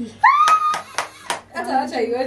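A voice calls out on a rising pitch and holds it, over four quick, sharp hand claps about a quarter second apart. Talking starts again near the end.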